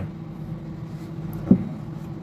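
A single dull knock about one and a half seconds in as the plastic body of a Bluetooth speaker, its grille removed, is set down on a wooden desk, over a steady low background hum.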